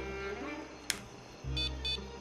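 Background score of low sustained string notes. A single sharp click comes about a second in, and two short high electronic beeps sound near the end.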